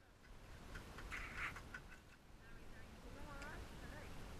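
Faint, indistinct voices of people talking, with a short harsh, noisy sound about a second in.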